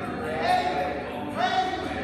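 A man singing a slow gospel song, holding long notes phrase by phrase.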